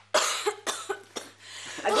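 A person coughing: one loud cough followed by a few shorter ones.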